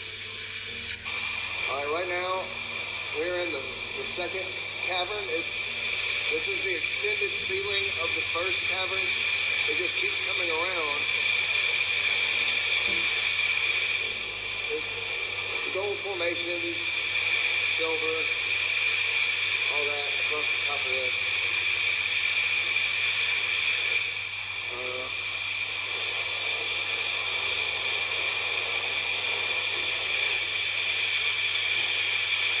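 A steady, loud hiss runs throughout, with indistinct voices talking off and on through the first two-thirds or so.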